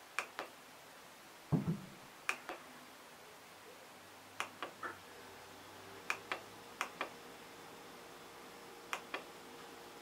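Small tactile push buttons on an Arduino LCD keypad shield clicking as they are pressed and released, mostly in quick pairs, about six times, with one duller knock early on.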